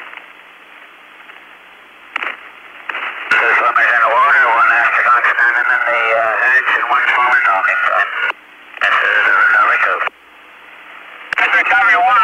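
Two-way voice radio traffic on a narrow, band-limited channel: a few seconds of channel hiss with a low steady hum, then garbled voice transmissions from about three seconds in, with a short break near eight seconds. No words can be made out.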